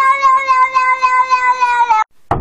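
A cat giving one long meow held on a single pitch, pulsing about five times a second and sagging slightly in pitch near the end.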